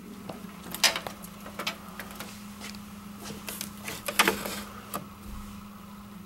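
Sharp clicks and knocks of a key unlocking a coffee machine's front door and the door being opened and handled, three louder ones about one, one and a half and four seconds in. A steady low hum from the switched-on machine runs underneath.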